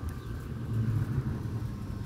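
A low outdoor rumble with no speech, swelling slightly about a second in.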